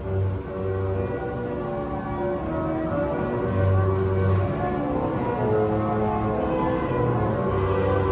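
Carousel music playing as the carousel turns: steady held notes over a repeating low bass note.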